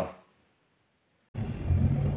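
Steady low engine hum of a vehicle on the move, starting abruptly about a second and a half in.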